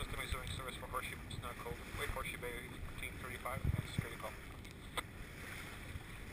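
Wind and water noise on a small sailboat, with faint, indistinct voices. There is a low thump a little past the middle and a sharp click near the end.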